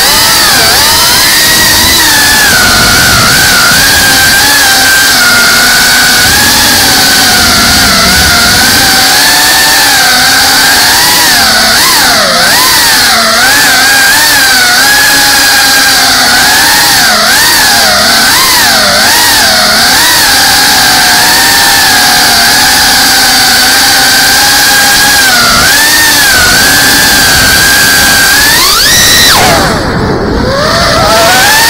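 Geprc CineLog 35 cinewhoop's brushless motors and ducted propellers whining, picked up by the onboard GoPro with a steady rush of air. The pitch wavers up and down with the throttle and sweeps sharply upward near the end.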